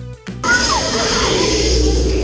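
Background music with plucked notes cuts off about half a second in, giving way to loud ride noise inside a theme-park water ride: a steady rushing hiss over a low rumble, with a few short sliding cries over it.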